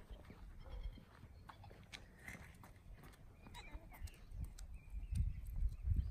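Faint outdoor ambience: an uneven low rumble of wind on the microphone, stronger in the second half, with scattered light clicks and a few faint high chirps.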